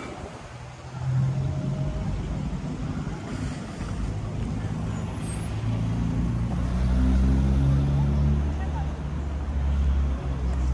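Road traffic: car engines and tyres passing along the street, a low rumble that builds from about a second in and is loudest around seven to eight seconds in.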